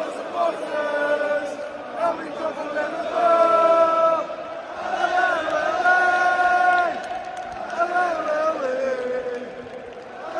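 Stadium crowd of Liverpool supporters singing a slow song in unison, with long held notes that swell louder twice through the middle.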